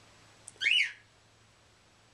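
A pet bird gives one short whistled chirp about half a second in, a quick note that rises and falls in pitch.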